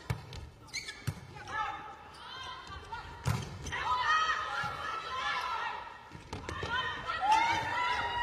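Volleyball being struck by hand during a rally in an indoor arena: a sharp smack of the ball at the start, another about a second in and the loudest just after three seconds, with the hits echoing in the hall. Shouting voices rise and fall between the hits.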